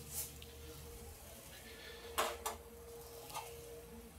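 A few soft clicks and knocks of a metal spatula and cookware being set down, the clearest two close together about halfway through, over a faint steady hum.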